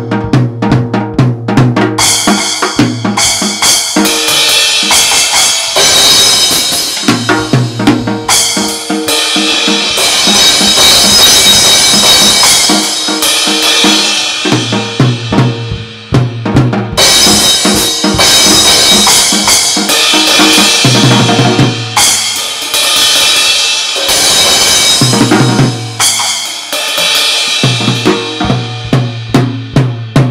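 Drum kit played hard and fast, with kick and snare hits under heavy cymbal crashes, over backing music whose low bass notes come and go in passages of a few seconds.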